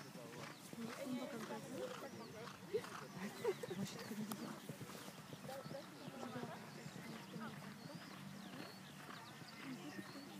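Indistinct chatter of spectators' voices in the open air, with two short sharp knocks about three seconds in.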